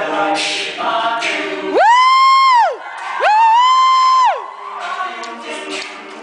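All-male a cappella group singing with vocal percussion. Midway the group drops out for two long, very high held vocal notes, each swooping up and falling away, and these are the loudest sounds here. The group then comes back in.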